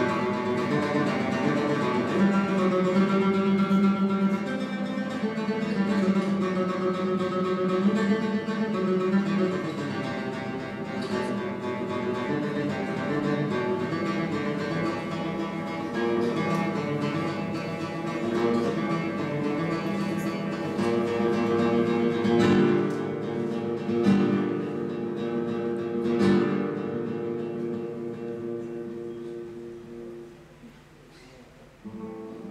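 Solo classical guitar with nylon strings played fingerstyle, a melody with sustained notes over bass lines. In the last third a few loud struck chords stand out, and the playing dies away near the end.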